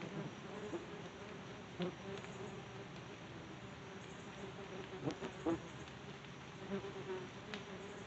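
Yellow jackets buzzing around the phone's microphone: a steady wing drone, with a few sharp ticks and brief louder passes, the loudest about five seconds in.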